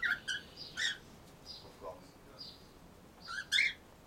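Cockatiels in an aviary calling: a string of short chirps and squawks. The loudest come right at the start, near one second, and as a pair about three and a half seconds in, with softer calls in between.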